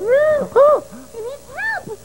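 A string of about five short wordless voice cries, each rising then falling in pitch, the first two the loudest.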